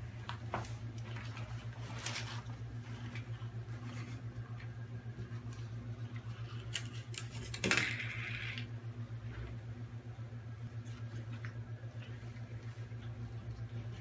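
Scuba gear being handled and inspected: scattered light clicks and knocks of buckles, hoses and the metal regulator first stage against the tank valve, with one louder scrape lasting about a second just past halfway, over a steady low hum.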